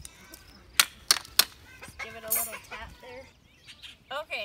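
Three sharp knocks in quick succession about a second in, followed by about a second of wavering, voice-like calls.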